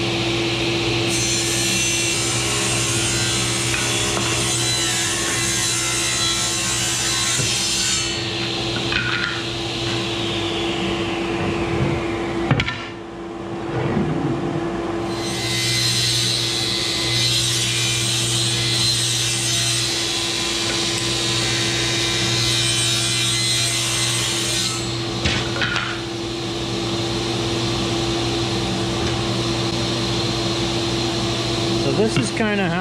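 Table saw ripping hard jatoba flooring into strips, its motor running steadily under the cutting noise of the blade in the wood. There are two long cuts, separated by a sudden drop in the sound about halfway through, after which the motor comes back up.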